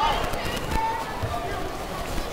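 Indistinct voices of coaches and spectators, with a few light footfalls and short knocks from the fighters moving on the foam mats.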